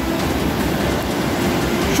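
Mudflow of brown floodwater and debris rushing past, a steady rushing noise.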